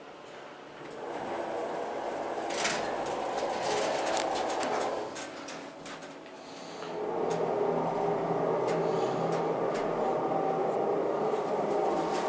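Schindler hydraulic elevator's pump motor running with a steady hum, fading out around five seconds in and starting up again about seven seconds in, stronger and steadier. A knock about two and a half seconds in and a few light clicks over the hum.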